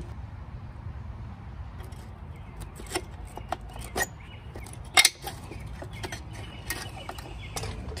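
Scattered sharp metal clicks and clinks of a screwdriver working at the clutch fork parts inside a manual transmission's bell housing, the loudest about five seconds in, over a steady low rumble.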